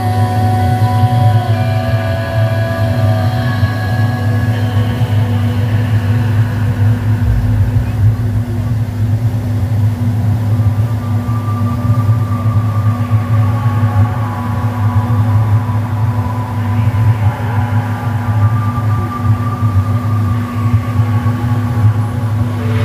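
Mercury Pro XS outboard motor running steadily at speed, a constant drone mixed with the rush of the wake and wind.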